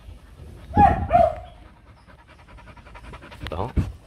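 A young male H'mông bobtail dog panting with its mouth open, with two short, louder sounds about a second in.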